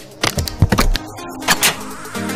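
Sound effects for an animated logo sting: a quick run of sharp clicks and snaps, with a held electronic music chord coming in about halfway through.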